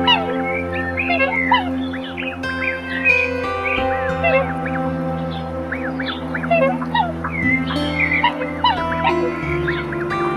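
A flock of waterfowl giving many short calls, several a second, over steady background piano music.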